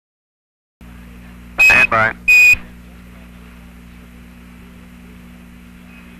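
Apollo mission air-to-ground radio link: two short high beeps, the Quindar tones that mark a transmission, bracket a clipped word about two seconds in. A steady radio hiss and hum runs under them.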